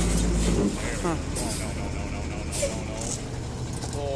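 Tow truck's engine running under load as its winch drags the car back over the concrete barrier: a low steady drone that drops and changes about two-thirds of a second in, then carries on lower and rougher, with a few brief hissy scrapes.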